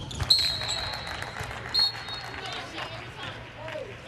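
On-court basketball sounds: a ball bouncing on the hardwood and two short, high sneaker squeaks, one a third of a second in and one near the middle, with faint voices of players calling out.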